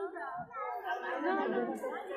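Crowd chatter: several voices talking over one another.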